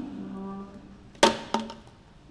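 A steady low tone that fades over about a second, then a sharp knock on the wooden tabletop about a second in, with a smaller knock just after.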